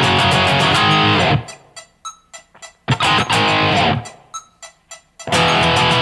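Distorted electric guitar in drop D tuning playing a power-chord riff. A held chord stops abruptly just over a second in. A second chord rings briefly about a second and a half later and is cut short, and the chords start again near the end. Short sharp ticks sound in the stopped gaps.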